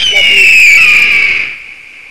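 A bird of prey's scream: one loud, high cry that starts suddenly, slides slightly down in pitch and fades after about a second and a half.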